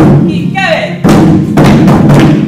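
Taiko-style barrel drums struck together with wooden sticks: loud unison hits, with a gap about half a second in where a short, falling vocal shout is heard before the drumming resumes about a second in.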